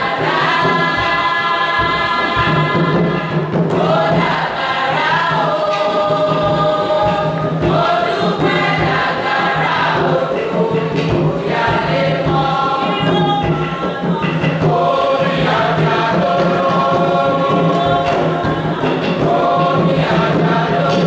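A group of voices singing together in long held notes that slide from one pitch to the next, choir-style, over a steady low note.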